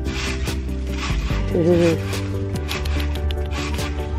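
Cat scratching in loose, dry sand: a run of short scrapes.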